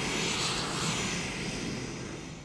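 Steady, loud hiss of air venting around the running gear of Union Pacific diesel locomotive No. 4141, over a low rumble.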